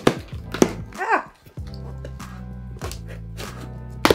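A box cutter cutting packing tape on a cardboard box, with sharp knocks from the box and tool at the start and about half a second in. Background music with a steady bass line runs under it.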